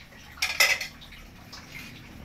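A brief clatter of dishes and cutlery: a few sharp clinks in quick succession about half a second in, over in well under half a second.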